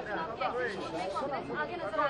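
Several people talking at once: overlapping voices that no single speaker stands out of.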